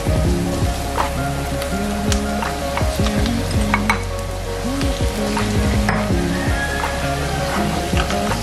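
Aromatics (onion, garlic and ginger) sizzling in hot oil in a nonstick wok, with a plastic spatula stirring and scraping in scattered clicks, while pork pieces are added to sauté, under background music.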